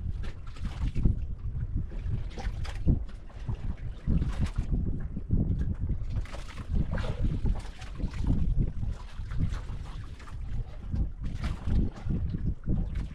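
Wind buffeting the microphone with a continuous uneven rumble, with water lapping and splashing against the hull of a small outrigger fishing boat in irregular washes.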